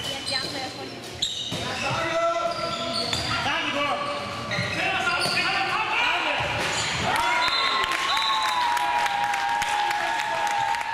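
Handball match play in a large echoing sports hall: a handball bouncing on the court floor with sharp knocks, athletic shoes squeaking on the floor, and players' voices. From about seven seconds in, a long held tone carries over the play.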